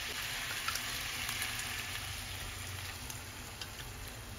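Diced potatoes, carrots and onions sizzling steadily as they fry in coconut oil in a nonstick kadai, slowly fading, with a few faint clicks about half a second in and again near the end.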